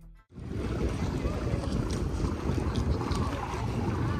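Wind buffeting the phone's microphone at the seafront, a heavy, uneven low rumble over the wash of the sea. It starts suddenly a moment in.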